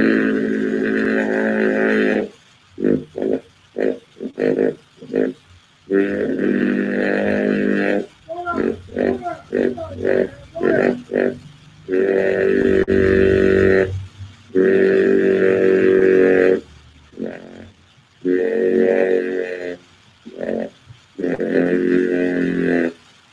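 A voice chanting long held tones of about two seconds each, with shorter broken syllables between them.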